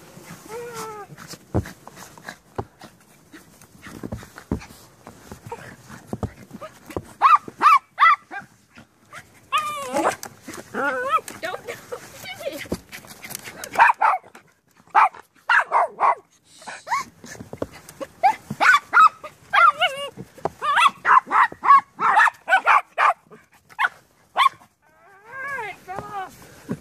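Papillons barking in quick, high-pitched yaps while they play at a snow shovel, starting about a quarter of the way in and coming thickest in the second half, with a few knocks before the barking.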